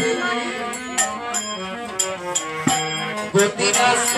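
Live namkirtan devotional music: held melodic notes over sharp percussion strikes about once a second, with a woman singing into a microphone at times.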